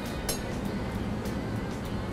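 Background music with a light clink of a serving spoon against a steel hotel pan about a third of a second in, over a steady low hum.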